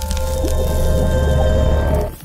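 Logo sting of music and sound design: a loud, steady deep rumble with several held tones above it.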